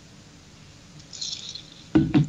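Quiet room tone with one short, soft hissing mouth sound from a man, such as a sip or an indrawn breath, about a second in.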